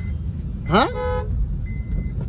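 Steady low rumble of a car in motion heard from inside the cabin. About a second in comes one short pitched hoot that rises quickly and then holds its note briefly.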